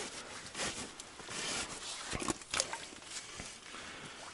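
Rustling and light clicks of hands pulling and sorting wet fishing line by an ice hole: scattered short handling noises, a few sharper ticks between about two and three seconds in.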